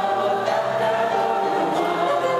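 Live music: female voices singing held notes over full orchestral accompaniment.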